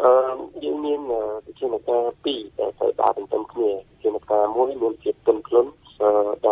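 Speech only: one voice talking continuously, thin and narrow-sounding, like a voice over a telephone line, in a radio broadcast.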